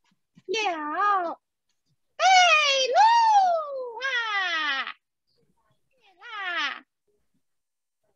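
A woman's voice giving Peking opera stage speech in a high, stylised delivery: three exclaimed lines with wide swooping pitch, the middle one longest and ending in a long falling slide, the calls and replies of a princess and her maid.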